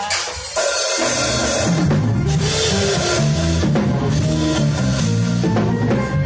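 Live church band playing, led by a drum kit with bass drum and cymbals; the full band comes in loud about half a second in and keeps going.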